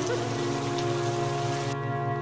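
Rain sound effect over a steady, sustained music drone; the rain cuts off suddenly near the end, leaving the drone alone.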